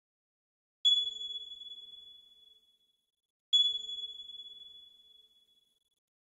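Two identical high, bell-like pings from a logo sound effect, about two and a half seconds apart, each struck suddenly and ringing out over about two seconds.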